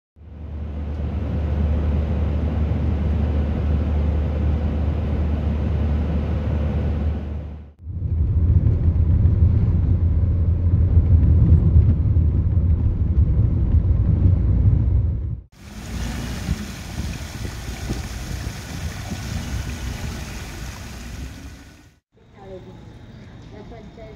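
Steady low rumble of road noise inside a moving car. It breaks off briefly about eight seconds in and comes back louder. From about fifteen seconds in, a hissier sound with much less rumble takes its place.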